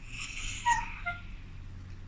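A Shiba Inu whimpering softly, with two short high whines in the first second.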